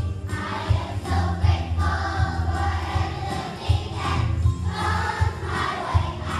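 A choir of first-grade children singing together over musical accompaniment with a steady low bass line.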